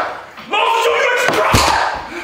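A person crying out, then a hard hit about one and a half seconds in: a blow landing in a fight.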